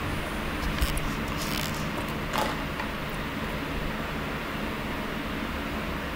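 Steady mechanical room hum from a running air-conditioning unit, with a few faint light clicks and knocks in the first half.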